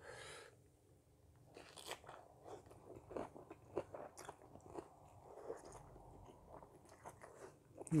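Faint close-up chewing of a mouthful of rice noodles and salmon salad: many small wet clicks and crunches, with a short slurp of noodles about two seconds in.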